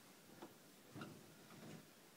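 Faint rubbing of a damp microfibre cloth wiped over window glass: a few soft strokes, the loudest about a second in.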